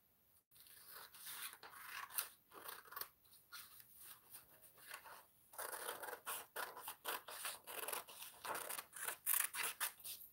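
Scissors cutting through a sheet of paper: a run of short snips, coming faster in the second half.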